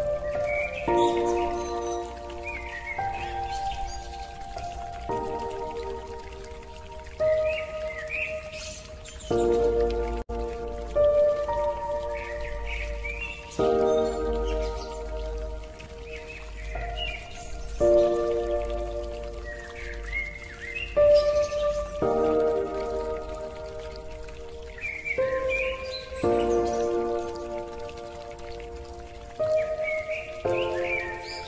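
Slow, calm relaxation music of sustained chords that change every two seconds or so, mixed with a rain sound bed and bird chirps.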